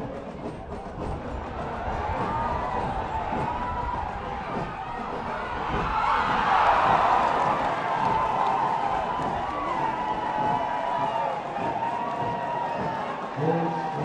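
Football stadium crowd noise with many voices shouting, swelling to loud cheering about six to seven seconds in as a goal is scored, then staying loud.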